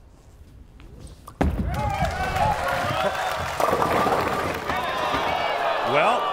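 Bowling ball rolling quietly down the lane, then crashing into the pins about a second and a half in, with the pins clattering. The strike attempt leaves a 7-10 split, and a crowd of many voices reacts loudly over the clatter.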